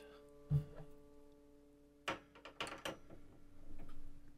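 A single upright piano string, a D a quarter tone flat, ringing and slowly fading. A dull thump comes about half a second in, and a run of clicks and knocks two to three seconds in as the tuning hammer is fitted onto the tuning pin.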